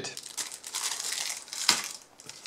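Clear plastic bag crinkling as it is handled, with one sharp tap near the end.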